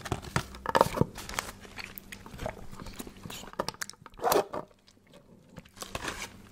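Close-miked crinkling and handling of a cardboard fried-chicken box, with scattered crisp crackles and crunchy bites; a louder burst comes about four seconds in.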